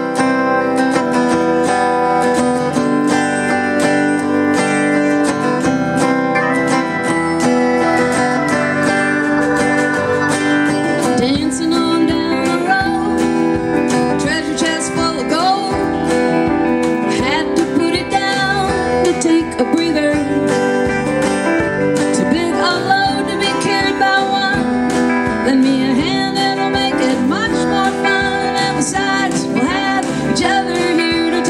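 Live band playing a country-rock song: a strummed acoustic guitar with electric guitar, bass guitar, keyboard and drums, steady and loud.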